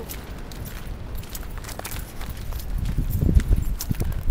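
Footsteps on a sandy dirt path over a low rumble of wind on the microphone; the steps turn into a run of louder thumps about three seconds in.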